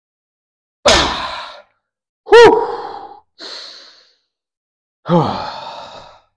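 A man's forceful, effortful exhalations during dumbbell reps: four short breaths a second or so apart, the voiced ones falling in pitch.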